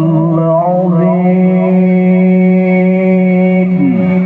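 Male Quran reciter (qori) chanting through a microphone and PA. A wavering melodic line settles into one long held note, which drops away near the end.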